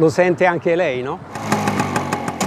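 A man speaks briefly, then about a second in a vintage Vespa scooter's small two-stroke engine is heard running steadily.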